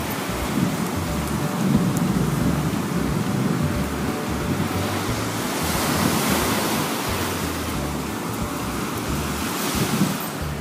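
Surf breaking on a sandy beach with wind buffeting the microphone; the hiss of the surf swells about halfway through and then eases off.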